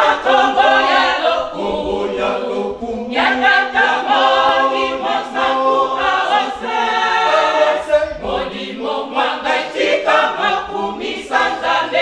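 Kimbanguist church choir singing a cappella, a Lingala hymn in sung phrases with short breaths between them.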